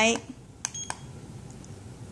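Up button on the back of a La Crosse W85923 projection alarm clock pressed while setting the hour: two short clicks, each with a brief high beep, about a quarter second apart.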